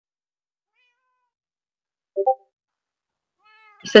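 A short pitched double chirp about two seconds in, then a longer meow that falls slightly in pitch near the end.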